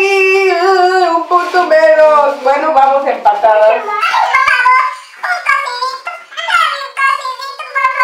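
High-pitched voices with no clear words, their pitch sliding up and down throughout; about four seconds in the sound turns thinner, losing its lower part.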